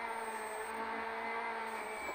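Peugeot 208 R2B rally car's naturally aspirated 1.6-litre four-cylinder engine heard from inside the cabin, pulling at steady revs in fourth gear.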